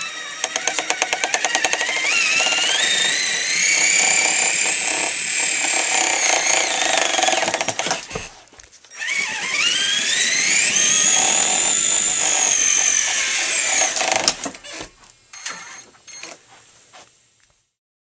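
Traxxas Summit RC monster truck's electric motor and gears whining as it tows a wagon loaded with about 90 pounds of weights. The whine rises in pitch as the truck pulls away and then holds high. It stops briefly about eight seconds in, then rises and holds again before cutting off near the end.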